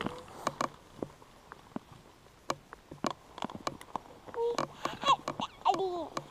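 Irregular sharp clicks and small snaps of dry twigs and needle litter being handled as a hand feels under a fallen log for a mushroom. Faint voices come in near the end.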